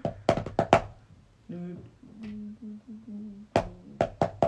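Wooden drumsticks tapping a quick run of about five strikes on a binder of sheet music, demonstrating a written drum pattern. A short wordless vocal line in even steps follows, and the taps start again near the end.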